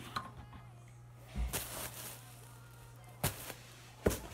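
Phone camera being handled and set down on a kitchen counter: a low thump about a second and a half in and a sharp knock about three seconds in, over a steady low hum.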